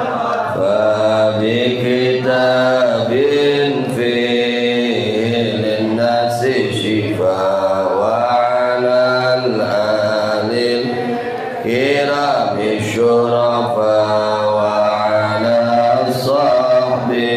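A man chanting melodically into a handheld microphone, in drawn-out phrases of held, gliding notes with short breaths between them.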